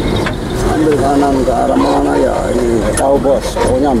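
A person talking, unclearly, over the steady low running noise of the moving vehicle.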